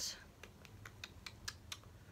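A run of about eight faint, light clicks, quick and unevenly spaced, over the last second and a half, like small taps of a fingernail or a hand on hard plastic.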